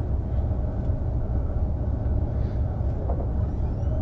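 Steady low rumble of room noise in a lecture room, the kind made by its ventilation, with nobody speaking.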